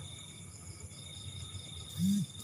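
Crickets and other night insects chirping: a steady high trill with a faster pulsed chirp above it; the lower trill breaks off and comes back about a second in.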